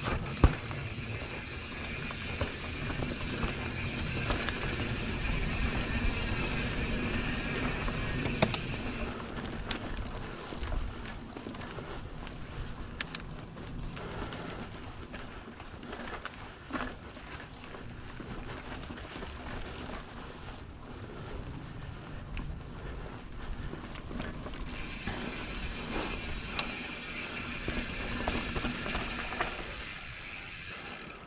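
Mountain bike riding down dirt singletrack: the rear freehub buzzes while coasting through the first eight seconds or so and again near the end. Tyre and chassis rattle run under it, with scattered knocks over bumps, the sharpest about half a second in.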